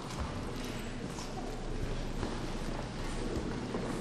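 Many people's footsteps on a wooden gym floor, a steady, irregular jumble of knocks and shuffles as players move about between the drum stands.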